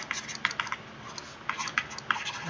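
Stylus tapping and scratching on a tablet screen while handwriting: a quick, irregular run of small clicks, thinning out briefly in the middle.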